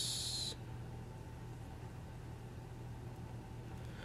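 Quiet steady low hum of room tone with nothing else happening. In the first half second a short hiss trails off from the end of a spoken word.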